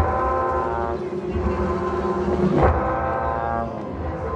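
Live rock band playing a slow ambient noise jam, heard from out in the audience: long held droning tones stacked over one another, swelling briefly a little past halfway, with the upper tones dropping away near the end.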